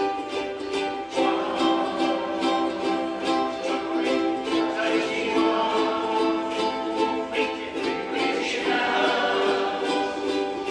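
A large group of ukuleles strumming chords together in a steady rhythm, with voices singing along from about a second in.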